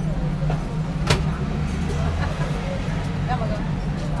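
A steady low mechanical rumble with a single sharp click about a second in.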